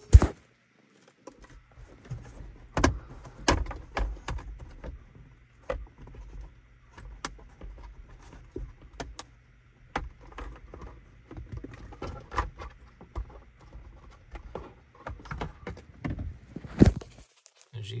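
Irregular plastic clicks, knocks and rustling as the clip-on trim cover around a car's rear-view mirror mount is unclipped and pulled apart, with handling noise on the phone's microphone. A sharp knock comes right at the start and another just before the end.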